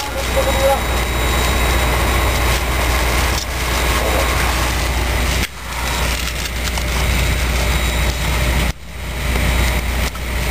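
Loud, steady outdoor background noise with a low rumble, dropping out abruptly about five and a half seconds in and again near nine seconds.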